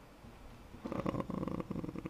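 A low hush for about a second, then a man's drawn-out creaky hesitation sound (vocal fry) of rapid pulses, lasting about a second, as he gathers himself to go on speaking.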